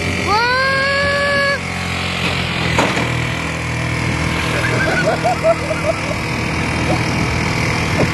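Motorcycle engine running steadily under wind and road noise while riding. A long, high shout rises and holds for about a second near the start, and a single sharp knock comes near three seconds in.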